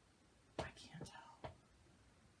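A woman whispering briefly to herself in a few short, soft bursts about half a second to a second and a half in; otherwise quiet room tone.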